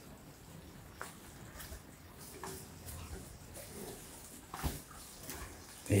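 Charolais-type cattle moving about in a straw-bedded barn pen: scattered faint rustles and small knocks, with a sharper knock about four and a half seconds in.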